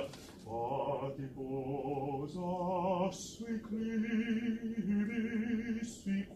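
A single voice singing a melody line with vibrato: three notes of under a second each, then one long held note from about halfway through.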